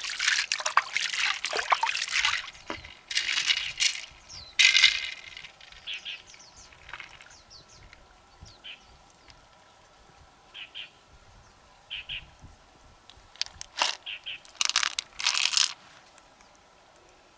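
Loose pearls clattering and rolling against each other and the inside of a freshwater mussel shell as they are poured in and the shell is handled, with water trickling from wet hands. Busiest in the first few seconds and again near the end, with only a few scattered clicks in between.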